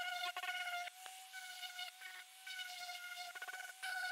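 Electric sander running with a steady high buzzing whine as it sands the edges of a foam insulation board with 40-grit paper.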